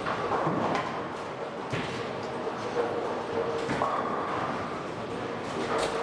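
Bowling alley din: balls rolling down the lanes and pins clattering, with sharp knocks every second or two.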